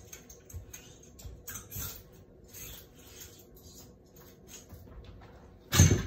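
Clothes on hangers being handled: scattered rustling of fabric and small clicks, with a louder clatter near the end as hangers go onto the metal rail of a garment rack.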